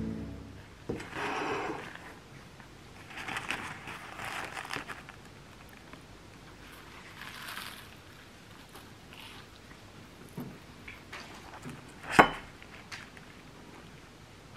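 Background music fading out, then soft crinkling rustles in a few bursts as paper is handled at the table, a few small ticks, and one sharp knock against the porcelain plate about twelve seconds in as the pie is set down.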